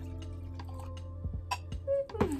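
Wine poured from a glass bottle into a glass, with a couple of light clicks about one and a half seconds in, over steady background music.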